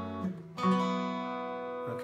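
Twelve-string acoustic guitar chords: one chord rings out and fades, then about half a second in a new chord is picked and left ringing, slowly dying away.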